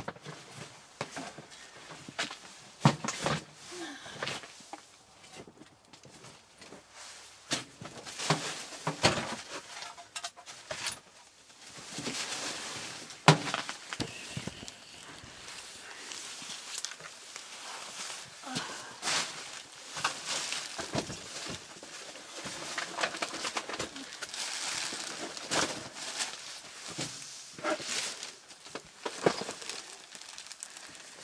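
Scattered knocks, thuds and rustling as clutter and plastic sheeting are handled and moved about, with a sharp knock about thirteen seconds in.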